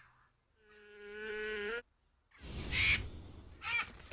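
A fly buzzing, growing louder and then cutting off suddenly. After a moment's silence comes a rush of noise with a couple of short, sharper sounds.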